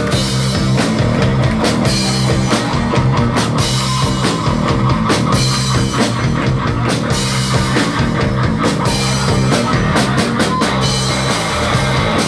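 Live rock band playing loud: distorted electric guitar, electric bass and a drum kit with crashing cymbals.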